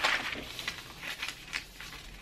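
Pattern paper rustling as a sheet is slid and handled, followed by light crinkling and short crisp sounds of scissors cutting through the paper.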